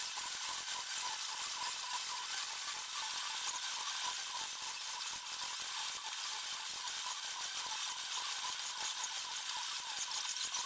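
A small hand blade shaving a thin strip of wood down into a dowel, a quick run of short scraping strokes, several a second. A thin high whine comes and goes behind it.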